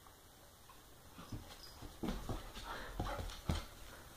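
A husky/Labrador mix puppy's claws clicking and scuffling on a tile floor as it moves about, a string of sharp taps starting about a second in, the loudest near the end.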